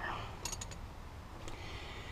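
Quiet handling noise of hand tools: a few faint light clicks about half a second in and one more a second later.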